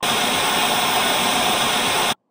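Television static: a steady, even hiss of white noise that starts abruptly.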